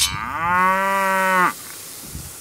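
A quick swish, then a single cow moo that rises in pitch, holds for about a second and cuts off abruptly: a sound effect cut into the intro sting.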